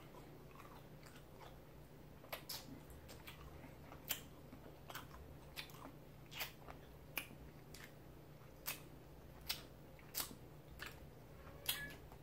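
Chewing a cola sour candy with the mouth closed: faint, irregular clicks and small crunches, roughly one every second.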